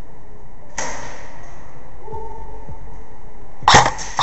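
Airsoft gunfire at close range: a sharp shot about a second in that rings briefly, then a louder, very short crack near the end.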